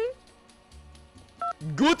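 A single short two-tone phone keypad beep about one and a half seconds in, over faint background music.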